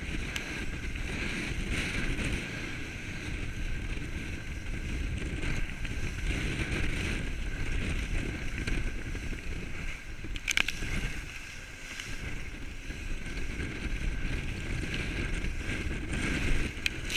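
Small powerboat running through rough, choppy sea: steady motor noise with wind buffeting the microphone and water splashing against the hull, and one sharp knock about ten and a half seconds in.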